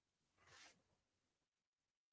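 Near silence: room tone, with one brief, faint hiss about half a second in.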